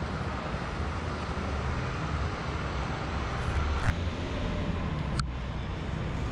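Steady low rumble of city street traffic, with two short sharp clicks, one about four seconds in and another about a second later.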